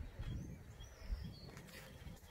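Faint outdoor ambience: a few distant bird chirps, short and high, over a low rumble.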